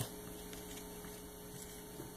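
Faint steady electrical hum with a little hiss: room tone.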